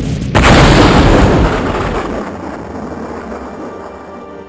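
Sound-effect explosion: a sudden loud blast about a third of a second in, whose rumble dies away over the next three seconds.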